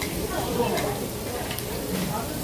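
Slices of pork belly sizzling on a hot grill plate over a tabletop gas burner, with a few light clicks of utensils.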